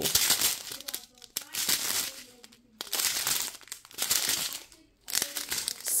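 Strips of sealed plastic packets of resin diamond-painting drills crinkling as they are handled and turned over, in about six short irregular bursts of rustling.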